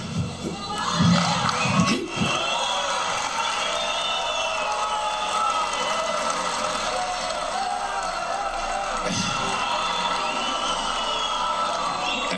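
A large crowd cheering and shouting, a dense sustained roar of many voices with high shouts rising above it, with a few louder single-voice bursts in the first two seconds.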